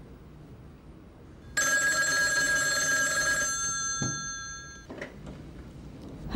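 Desk telephone's bell ringing once: a fast metallic trill of about two seconds, starting about a second and a half in, whose tones fade away over the following second.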